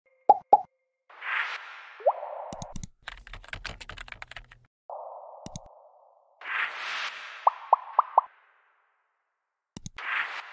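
Computer-interface sound effects: two quick pops, swishes with short rising chirps, a burst of rapid keyboard typing about three seconds in, a single mouse click, then a run of four short rising plops and a final click near the end.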